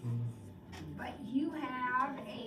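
A person's drawn-out, wordless vocal sound, rising and then falling in pitch, beginning about a second and a half in, preceded by a brief low hum at the start.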